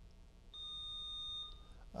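Quiz-bowl buzzer system sounding a single steady, high electronic beep, lasting about a second and starting about half a second in: a player has buzzed in to answer the toss-up.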